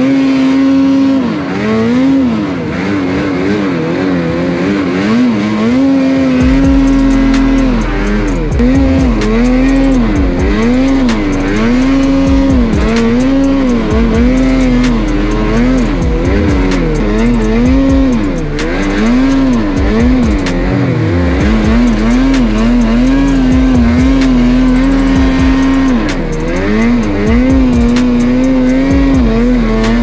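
A Lynx Boondocker mountain snowmobile's two-stroke engine, heard from on board as it is ridden through deep powder. The revs rise and fall again and again as the throttle is worked, then hold steadier in the last third. A fast, fine crackle runs over it from about six seconds in.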